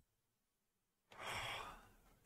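A man's audible sigh: one breathy exhale of under a second, about a second in, after near silence.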